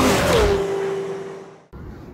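Tail of a TV show's logo sting: a loud rushing music-and-effects flourish that fades out, with a single tone that slides down and holds before cutting off suddenly near the end, leaving faint outdoor background.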